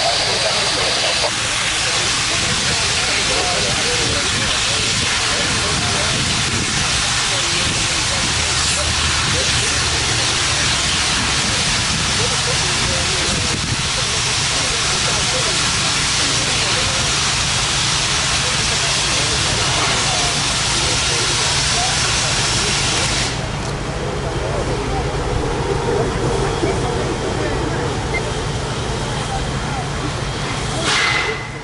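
Safety valves of Norfolk & Western class J 4-8-4 steam locomotive 611 blowing off in a loud, steady hiss of escaping steam, which cuts off abruptly about 23 seconds in as the valves reseat.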